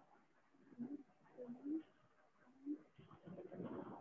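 Faint pigeon cooing: three short, low, wavering coos spread over the first three seconds.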